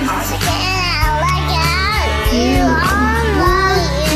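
Karaoke backing track playing, with a child's voice singing along over it in gliding, held notes.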